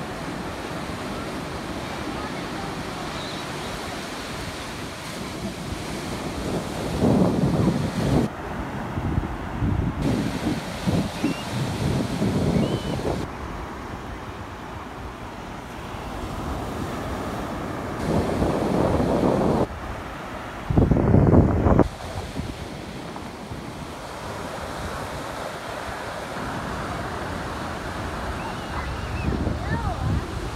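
Atlantic surf breaking and washing up the beach in a steady rush, with wind buffeting the microphone in several loud gusts.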